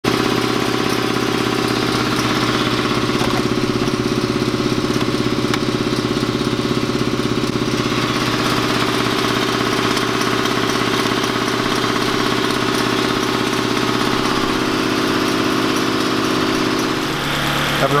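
Ford Focus four-cylinder engine idling steadily, its even hum unchanged for most of the stretch and shifting in tone near the end.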